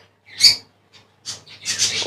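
A bird chirping: one short call about half a second in, then a few fainter chirps near the end.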